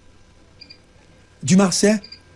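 A man's voice speaking French. A pause of about a second and a half with only a faint steady hum comes first, then he says a word near the end.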